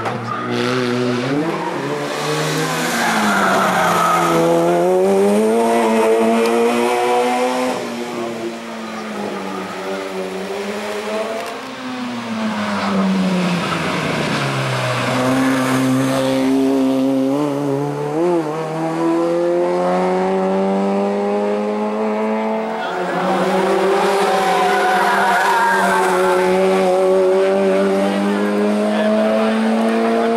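Engine of a race-prepared hatchback hill-climb car revving hard as it accelerates up the course, its pitch climbing through each gear and dropping at the shifts and at lifts for the bends.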